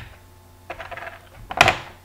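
Small hard items being handled on a table: a click, then a patter of light rattling clicks, and a louder, brief scraping noise about a second and a half in, as the e-cigarette batteries are put down and the chargers picked up.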